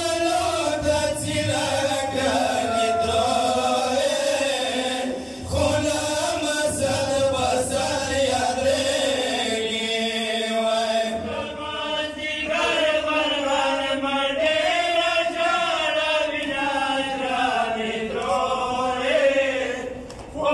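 Men's voices reciting a Pashto noha, a Shia mourning lament, chanted without instruments into microphones, with a short break about five seconds in.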